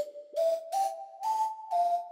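Spectrasonics Omnisphere 'Fast Chiff Heirborne Flute' software-synth preset playing a short phrase of about five notes. Each note starts with a breathy chiff. The notes step upward in pitch, then step down on the last note, which rings on.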